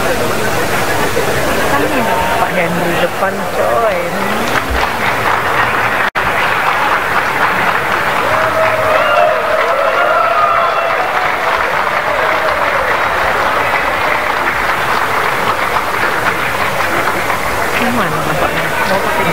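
A crowd in a large hall applauding, with many voices talking and calling out over the clapping. The clapping is thickest in the second half, after a very brief drop-out in the sound about six seconds in.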